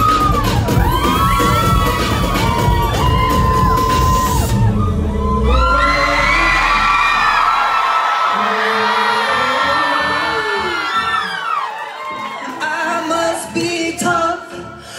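Live electronic pop with heavy bass and singing through the PA, which stops about five seconds in. The crowd then cheers, screams and whoops, and voices come in again near the end.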